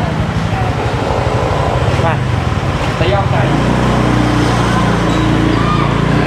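Motor vehicle engines running in slow, congested street traffic, heard from a small motorbike. About three and a half seconds in, a steadier, deeper engine note sets in close by.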